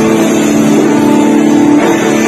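Live metal band playing loud: distorted electric guitars holding a chord, which changes near the end.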